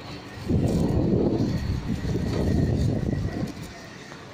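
Wind from a running Britânia BVT510 Turbo table fan buffeting the microphone at close range: a loud, uneven rumble that starts suddenly about half a second in and drops away near the end.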